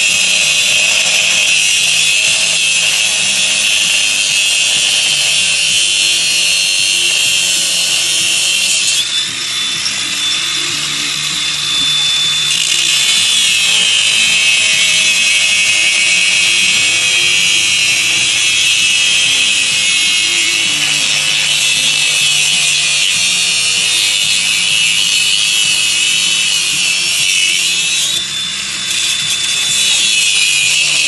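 Cordless angle grinder's cutting disc grinding steadily through the hardened steel of an Oxford Nemesis motorcycle chain lock, a loud continuous high-pitched grinding that eases briefly twice, about nine seconds in and near the end.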